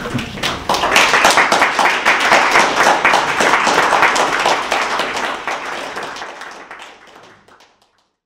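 Audience applause: scattered claps that fill out into full applause about a second in, then fade away to silence over the last few seconds.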